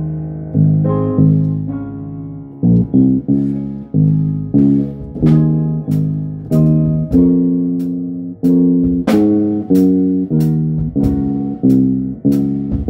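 Electric bass guitar played fingerstyle: a melodic line of plucked notes, each ringing and fading. From about halfway through, the notes fall into a steady pulse with sharp, clicky attacks.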